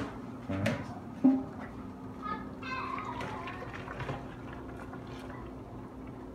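A pot of boiled spaghetti being drained into a plastic colander in a sink. The metal pot knocks a few times, loudest a little over a second in, then water pours and splashes through the colander.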